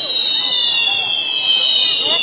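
A ground firework set piece on a tree-shaped frame, many fountains firing at once with a hiss and a chorus of high whistles, each slowly falling in pitch.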